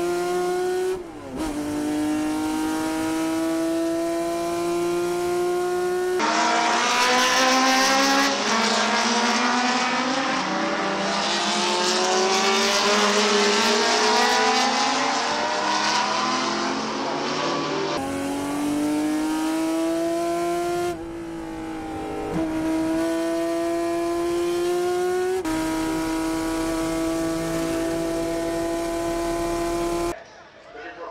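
A classic GT race car's engine heard from inside the cockpit at racing speed, its note climbing steadily under full throttle with a brief dip about a second in. In the middle stretch, several race cars go past at speed, their engine notes overlapping, before the single in-cockpit engine note returns, climbing again.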